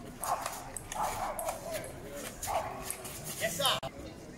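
Table-tennis ball knocking between paddles and a concrete table in a rally, under four loud, short, dog-like barks, the last one rising in pitch.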